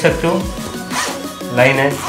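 A zip on a textile motorcycle riding jacket being pulled, with a short rasp about a second in, under background music and voice.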